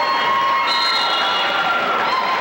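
Basketball spectators cheering, several voices holding long high yells that overlap, with a fresh yell joining about two-thirds of a second in.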